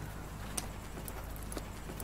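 Quiet background with a steady low hum and two faint clicks about a second apart.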